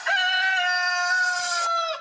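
One long held pitched call, steady and then dipping slightly in pitch near its end, in a brief break where the electronic dance music drops out.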